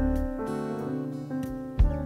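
Instrumental passage of a live ballad band: acoustic guitar strumming over sustained keyboard and bass chords, with a sharp low thump near the end.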